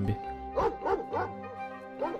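Dogs of a stray pack barking, about five short rising-and-falling barks in the first second and a half, over a sustained background music drone.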